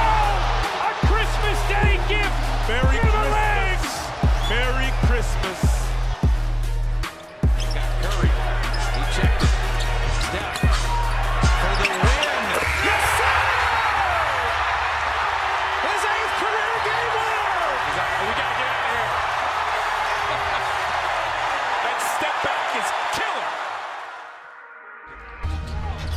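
Background music with a heavy, thudding bass beat laid over arena crowd noise. About twelve seconds in, a basketball crowd breaks into loud, sustained cheering for a buzzer-beater, which fades near the end.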